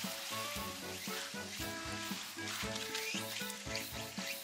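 Background music with a steady beat, over the grainy rustle of dry rice pouring from a plastic bag into a metal mess tin.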